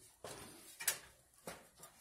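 A few light clicks and knocks from handling, four in all, the sharpest a little under a second in.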